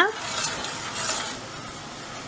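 Metal spoon stirring salt into a stainless-steel saucepan of water on the boil, over a steady hiss from the heating water.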